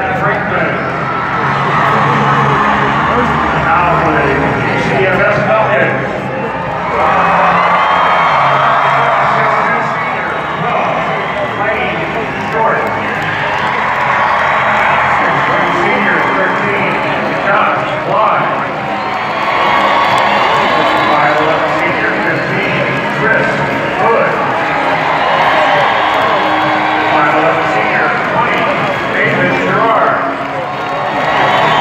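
Loud, steady arena crowd noise: many voices cheering and shouting at once, with music underneath.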